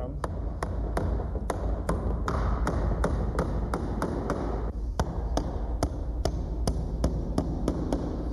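Claw hammer driving a long finish nail through a wooden door's brick molding into the framing: a steady run of sharp taps, about three a second, with a short break about halfway through.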